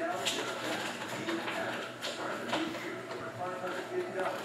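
Bowman Chrome trading cards being handled and slid one behind another in the hands, a faint rustle with a few light card clicks.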